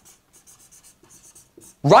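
Faint, quick scratchy strokes of a marker writing on a whiteboard, several a second, stopping just before a man's voice starts near the end.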